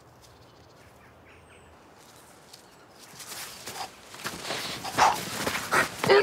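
Sword-sparring bout on grass: quiet for about three seconds, then scuffling footsteps, swishes and sharp hits of the blades that grow louder, the strongest about five and six seconds in.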